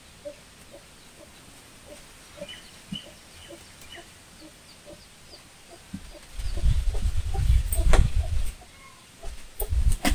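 Marker writing on a whiteboard. In the second half the board gives loud, low bumping and rumbling, with a sharp knock partway through. Faint, short high chirps come and go in the first half.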